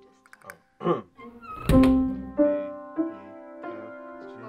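A short vocal sound, then a loud thunk about halfway through with a note ringing out from it, followed by single held piano notes sounding one after another.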